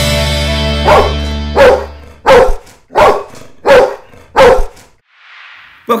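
A dog barks six times in an even series, about two-thirds of a second apart. The last chord of a rock-style intro tune rings under the first barks and fades out by about two seconds in.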